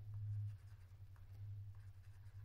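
Stylus writing on a tablet screen: faint light taps and scratches of the pen tip over a steady low hum.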